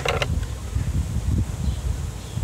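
Wind rumbling on the microphone, an uneven low buffeting.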